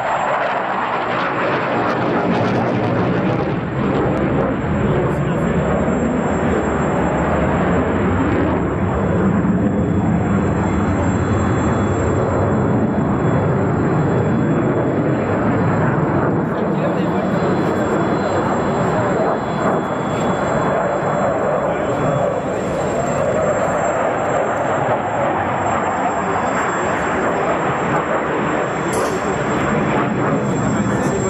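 Loud, continuous jet noise from a JF-17 Thunder fighter's Klimov RD-93 afterburning turbofan as it flies display maneuvers overhead. The level stays steady apart from small dips.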